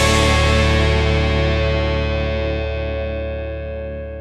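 The final chord of a rock song ringing out on distorted electric guitar after the drums stop, fading steadily as it decays.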